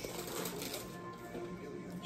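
Music from a television at moderate level, as a news broadcast goes to a break, with some light rustling and clicking close by.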